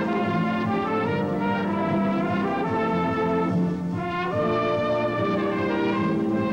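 Brass band playing, with cornets prominent, moving through held chords that change every second or two, with a brief drop in level just before four seconds in.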